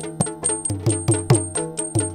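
Yakshagana percussion between sung lines: chande drum struck with sticks and maddale played by hand in quick strokes, about five a second, over a steady drone, with a high metallic ring on the strokes.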